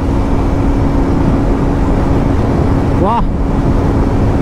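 KTM RC 125's single-cylinder four-stroke engine running at high, steady revs at highway speed, its steady note almost buried under heavy wind rush on the microphone.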